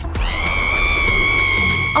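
A long, high-pitched scream that rises briefly at the start and then holds steady for nearly two seconds, over background music.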